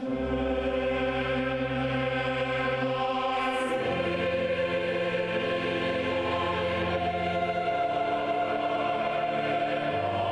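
Large mixed choir singing long sustained chords in a cathedral, with the lower voices moving to a new chord about four seconds in.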